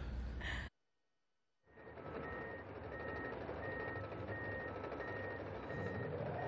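Komatsu D39EX crawler dozer running, its reversing alarm beeping steadily about one and a half times a second. The sound starts about two seconds in, after a moment of silence.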